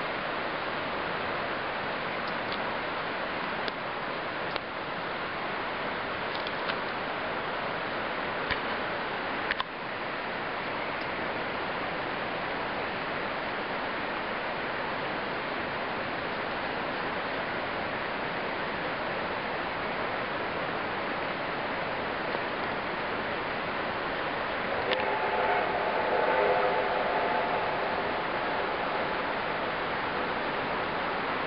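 Steady rushing outdoor noise with a few faint clicks. About 25 seconds in, a distant locomotive whistle sounds as a steady chord of several tones for about three seconds.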